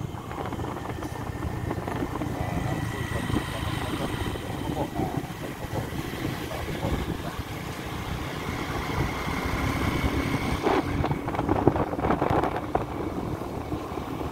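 Motorcycle engine running steadily while riding along a road, with wind noise on the microphone.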